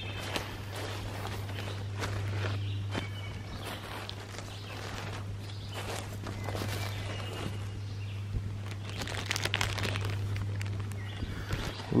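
Footsteps crunching and rustling through dry leaf litter on a forest floor, irregular steps throughout. A steady low hum runs beneath them.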